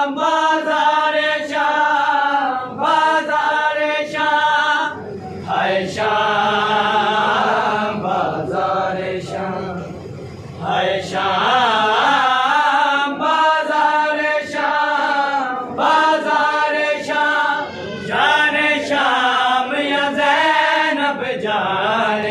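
Male voices chanting an Urdu noha, a Shia lament, unaccompanied, in long wavering sung phrases with short breaths between them.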